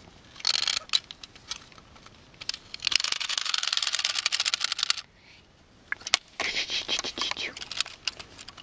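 Clockwork motor of a plastic wind-up diver toy whirring as its legs are made to kick: a rapid, even run of clicks for about two seconds in the middle, with shorter rattling bursts near the start and later on.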